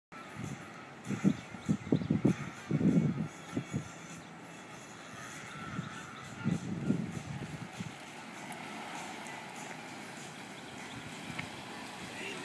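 Outdoor ambience with a man's voice briefly in the first few seconds. Near the end a vehicle engine grows steadily louder as it approaches.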